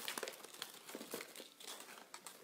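Packaging crinkling as jewelry is handled, in quick irregular rustles with small clicks.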